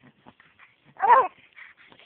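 Three-month-old baby fussing, with one short cry about a second in between fainter small sounds.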